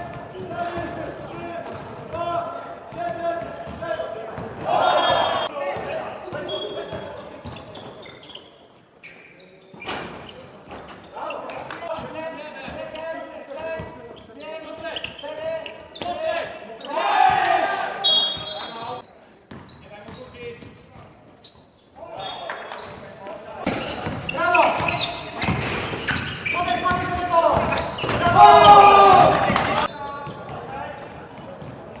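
Live game sound of amateur indoor basketball in a sports hall: the ball bouncing and thudding on the court, players' and bench voices calling and shouting, echoing in the hall. The shouting swells at intervals and is loudest near the end.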